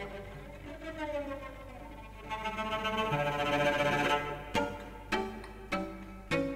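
Slow string music from a projected film's soundtrack: held notes swell in loudness, then short sharp notes come about every half second from about four and a half seconds in.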